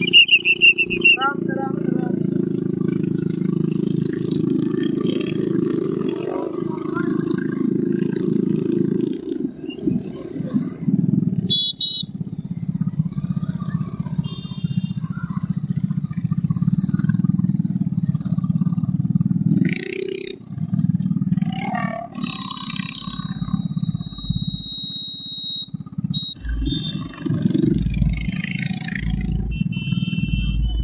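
Motorcycle engine running steadily close by, with scattered voices over it. A steady high whistle-like tone sounds for a few seconds in the second half.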